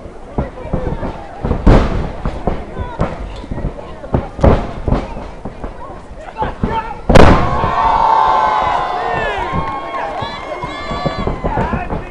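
Wrestlers slamming onto the ring mat: sharp thuds about two seconds in and at four and a half seconds. The loudest slam comes about seven seconds in, and right after it a crowd screams and cheers for several seconds.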